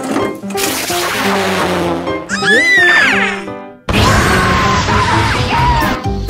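Cartoon background music with firework-rocket sound effects: a fizzing hiss, a whistling glide in pitch near the middle, then after a brief drop a loud rushing whoosh with a wavering tone.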